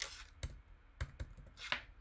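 Computer keyboard keys tapped one at a time, about five separate clicks spread over two seconds, as a number is typed into a field.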